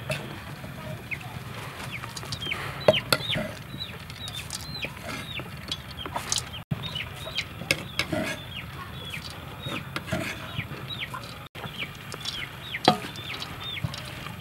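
Chickens calling in a steady run of short, high peeps that fall in pitch, with a few sharp clicks of a metal spoon against a wooden mortar and steel bowl, the loudest about three seconds in and near the end.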